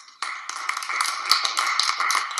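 Applause from a small group of people, starting just after the speech ends: a dense patter of separate claps.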